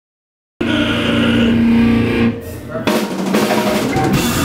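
Live heavy metal band playing at full volume: a held chord rings out, then drums fill in and the full band crashes in about three seconds in.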